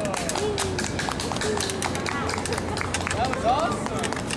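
Short bits of people's voices outdoors over a steady background of street sound, with many small clicks.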